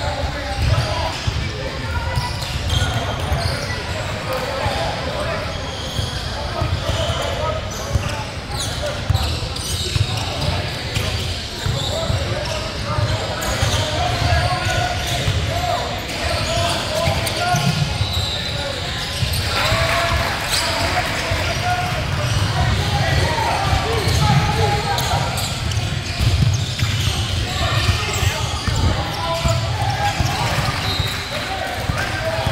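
A basketball being dribbled on a hardwood gym floor during a game, with indistinct voices of players and spectators, all echoing in a large hall.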